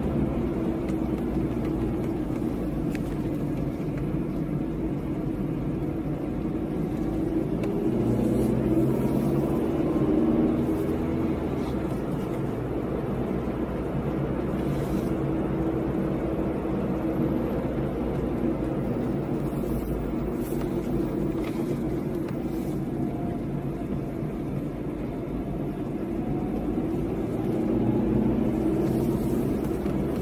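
Car engine and road noise heard from inside the cabin while driving. It runs steadily and grows louder twice, about eight seconds in and again near the end.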